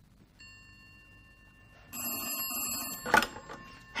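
A telephone bell rings once for about a second, followed by a sharp clack as the handset is snatched up.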